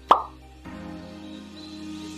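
A single short pop sound effect just after the start, over light background music with steady held notes.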